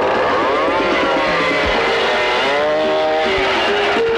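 Several motorcycle engines running and revving, their pitch swelling up and falling back twice.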